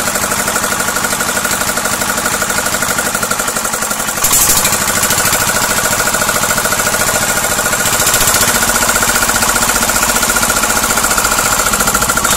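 Small single-cylinder diesel engine of a concrete mixer running on test after a service, with a fast, even knocking beat. About four seconds in it gets louder, and it rises a little again near eight seconds.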